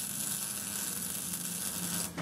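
MIG welder running a continuous weld on steel: a steady crackling sizzle over a low hum, cutting off right at the end.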